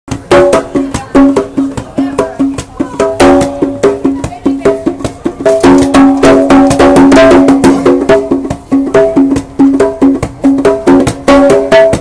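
A pair of congas played by hand in a fast, continuous rhythm: quick sharp strikes mixed with ringing pitched tones from the drum heads.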